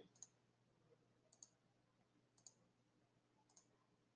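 Near silence broken by a few faint computer mouse clicks, about one a second.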